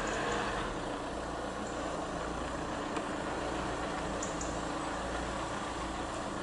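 Steady low background rumble with a hiss over it, and a faint click about three seconds in.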